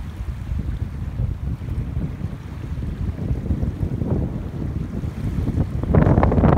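Wind buffeting the microphone: a steady low rumble that grows stronger near the end.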